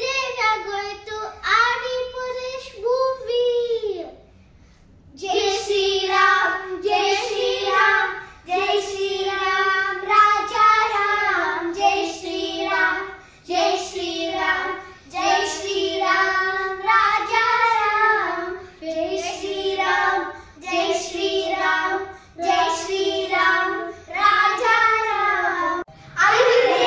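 Children singing a song together with no instruments: a short opening phrase, a pause of about a second, then a long run of steady sung phrases.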